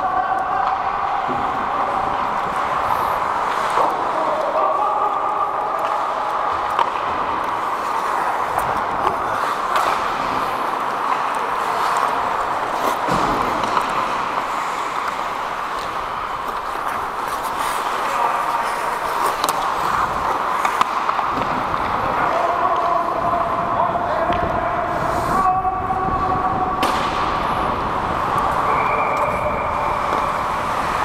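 Ice hockey play heard from up close on the ice: a steady scraping noise of skate blades on ice, broken by scattered sharp clacks of sticks and puck, with players' voices in the background.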